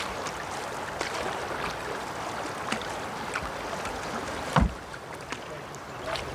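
Canoe being paddled with a wooden otter tail paddle through fast river water: a steady rush of moving water, with a few light clicks and one sharp knock about two-thirds of the way in.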